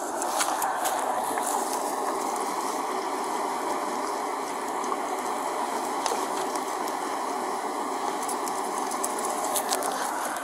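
Carbonated alcoholic drink poured out of a can onto sandy ground: a steady splashing, foaming stream. The can is about three quarters full, so the pour runs on without a break.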